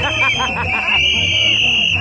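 Gagá band music: a shrill, sustained high note rides over a repeating low drum beat, with quick rapid figures in the middle range during the first second.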